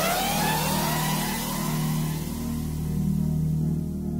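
Soundtrack effect: a rising whine, several tones climbing together and levelling off, over a steady low hum.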